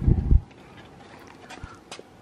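A few low, muffled thumps in the first half-second, typical of a handheld camera being bumped and moved. Then a quiet background with a couple of faint clicks near the end.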